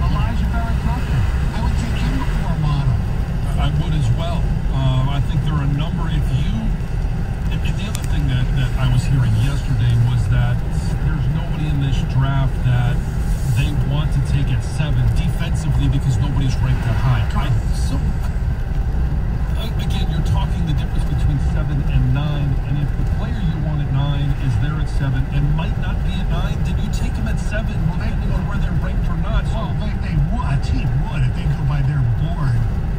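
Steady low road and engine rumble heard from inside a car cruising on a freeway, with indistinct talking under it.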